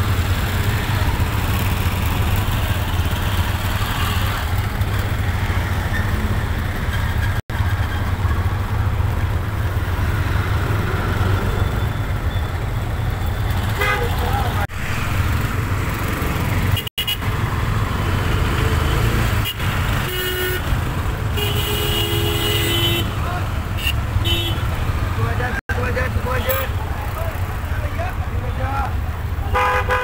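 Busy street traffic with a steady low rumble, and vehicle horns honking several times in the second half, with voices of people nearby.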